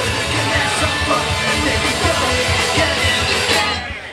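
A live rock band playing loud: electric guitars, drums and a male voice singing. The music drops out abruptly right at the end.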